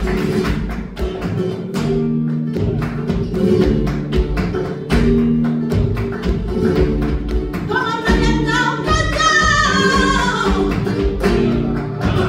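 Live flamenco bulerías: acoustic flamenco guitar playing, driven by steady rhythmic handclaps (palmas) from several people. A singer comes in with a long, wavering sung phrase about eight seconds in.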